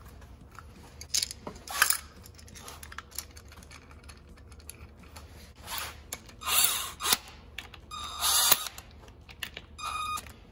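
Cordless impact driver run in several short bursts, spinning the timing chain guide bolts down on an LS V8 block. The trigger is let off before the tool starts to hammer.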